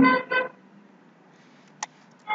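A man's voice holds a short drawn-out vowel for about half a second. Then there is quiet room tone, with a single keyboard click near the end as the notebook cell is run.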